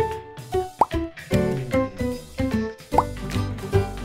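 Light, playful background music of plucked notes, with two short rising 'bloop' sounds, one about a second in and another about three seconds in.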